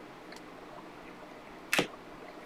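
A single short swish of a trading card being slid off the front of a stack, near the end; otherwise quiet room tone.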